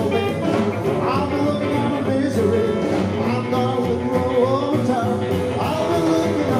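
Live rockabilly band playing, electric guitar lines over a strummed acoustic guitar and a drum beat.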